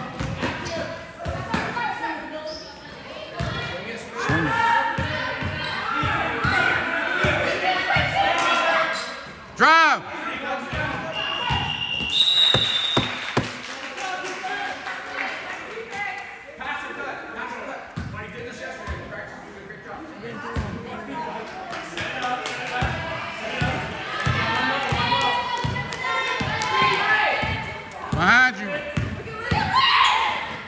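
A basketball bouncing and thudding on a hardwood gym floor during play, with players' and spectators' voices echoing in the large hall. A few short squeaks are heard about a third of the way in and again near the end.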